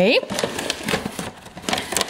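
Plastic bag of dry pet food crinkling and rustling in irregular crackles as a hand rummages inside it. A brief voice is heard right at the start.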